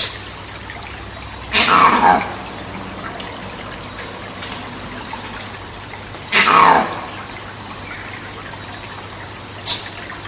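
Monkey screaming in rainforest ambience: two loud calls about a second and a half and six seconds in, each about half a second long and falling in pitch, then a short shriek near the end. Under them runs a steady rushing background like trickling water.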